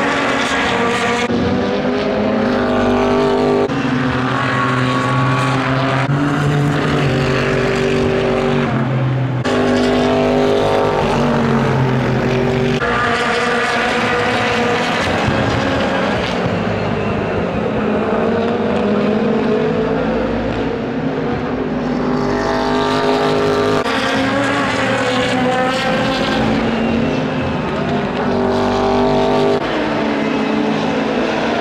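Super GT race cars passing one after another at racing speed, their engines running hard without a break. The engine notes overlap and step up and down in pitch every few seconds.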